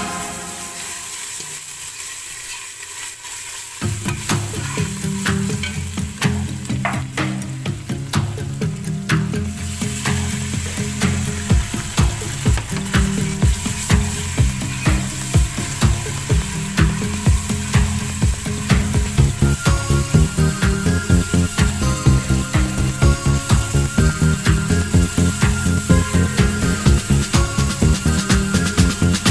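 Fried onions sizzling in hot oil in a cooking pot as they are stirred. Background music with a steady beat comes in about four seconds in and grows louder.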